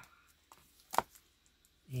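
A single sharp tap about a second in, as a bagged and boarded comic book is set down against a wooden tabletop.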